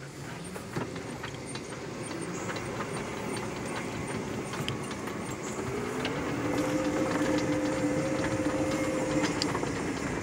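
Electric Polaris utility vehicle with a 72-volt AC motor driving over dirt: rolling, rattling chassis noise that slowly grows louder. About halfway through, a two-tone motor whine rises in pitch, then holds steady and fades shortly before the end.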